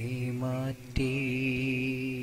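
A man's voice singing a Malayalam poem in a slow, chant-like melody: a short phrase, a brief break, then one long held note from about a second in.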